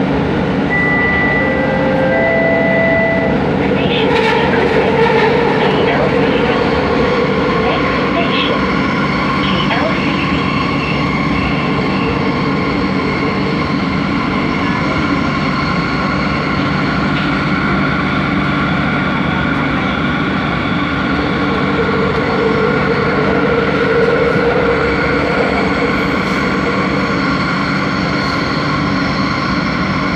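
Inside a Bombardier Innovia ART 200 metro car running underground: a steady loud running noise with several steady humming tones. A short chime of a few clear notes sounds about a second in.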